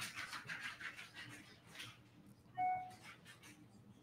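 A single short computer notification chime, one pitched ping about two and a half seconds in, coming as a new notification arrives. Before it, faint scattered clicks and rustling.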